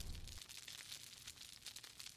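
Near silence with faint, dense crackling.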